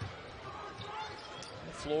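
A basketball dribbled on a hardwood court, a sharp thud at the start followed by a few fainter bounces, over the steady murmur of an arena crowd.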